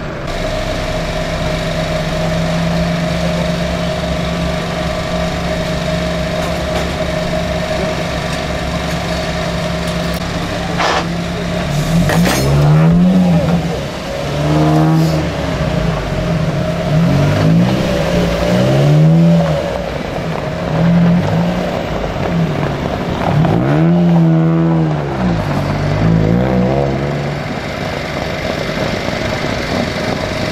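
Ford Fiesta ST rally car's engine idling steadily, then revved up and down again and again, each rev rising and falling over a second or two.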